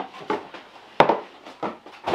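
Packaging being handled by hand: small rustles and ticks, with one sharp click about a second in.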